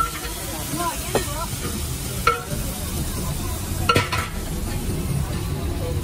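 Egg and onion mixture sizzling on a large flat iron griddle, with a few sharp clicks about one, two and four seconds in.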